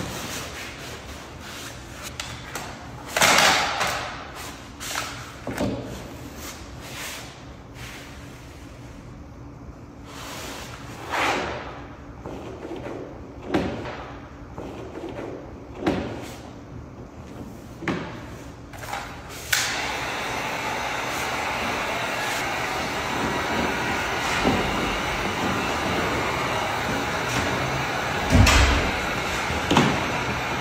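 Scattered knocks and scrapes of vinyl floor planks being lifted and fitted by hand. About two-thirds of the way in, a heat gun switches on and runs with a steady blowing hiss, with one heavy thump near the end.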